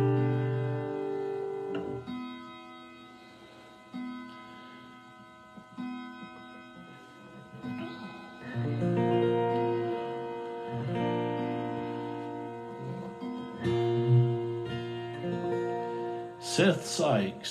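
Acoustic guitar chords played slowly, each one left to ring and fade before the next, a new chord about every two seconds. The playing grows fuller and louder from about halfway through.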